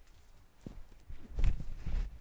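Footsteps on a tiled floor: a few low thumps and knocks, loudest about a second and a half in.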